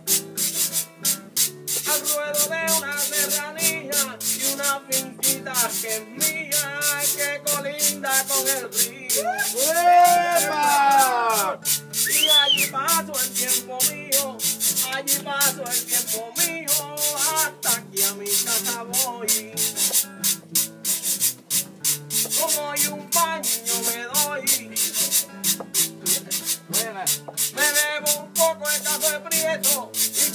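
Instrumental break of a Puerto Rican folk song: an acoustic guitar and a second, smaller string instrument strummed, over a steady, fast, rhythmic scraping percussion. A brief swooping high tone stands out about ten seconds in.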